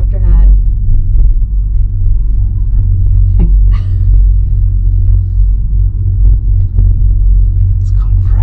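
Loud, steady low rumble of a gondola cabin moving up its cable, heard from inside the cabin, with faint voices under it.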